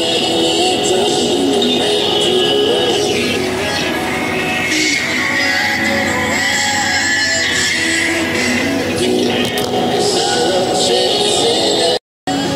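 A song with singing playing continuously on a tractor cab's radio.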